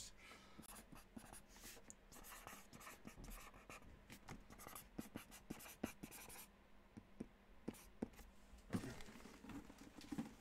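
Near silence with faint scratching and scattered light clicks of small objects being handled.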